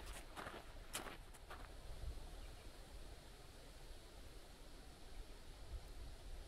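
A few footsteps on a gravel bush track in the first two seconds, then faint outdoor quiet with a low wind rumble on the microphone.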